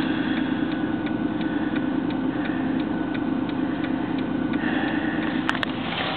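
Car engine idling, heard from inside the cabin as a steady hum, with a regular ticking about twice a second. Two sharp clicks come near the end.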